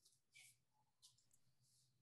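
Near silence, with a few faint clicks about half a second and a second in.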